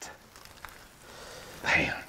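Faint, steady sizzling of grilled cheese sandwiches frying on an electric griddle, with a short burst of voice near the end.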